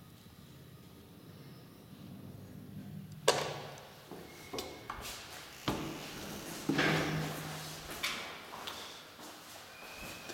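Old Graham Brothers traction elevator arriving with a low hum, then a sharp clunk about three seconds in. After it come several clicks and knocks as the manual swing landing door is unlatched and opened by its knob.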